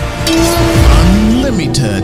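Title-sequence sound effects over intro music: a whoosh about a quarter second in, a deep boom about a second in, then tones sliding up and down.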